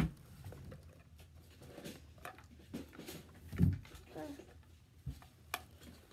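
Scattered light clicks and handling noises of plastic parts being fitted and snapped into a toy RC boat, with a brief vocal sound a little past the middle.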